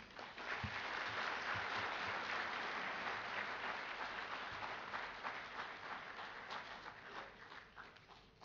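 Audience applauding: the clapping swells within the first second, holds steady, then thins into scattered claps and fades near the end.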